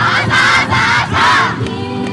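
Many voices shouting together in unison twice, each shout about half a second long, over the dance music: a dance troupe's kakegoe call.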